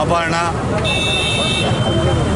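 A vehicle horn sounds once, a steady high-pitched toot lasting a little under a second, starting about a second in, over a man's voice and street noise.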